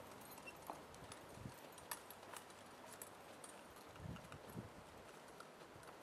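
Faint hoofbeats of a Morgan horse walking on drive lines: a few soft, scattered thuds, otherwise near silence.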